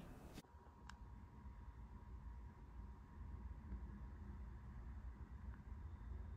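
Near silence: quiet room tone with a low steady hum and one faint click about a second in.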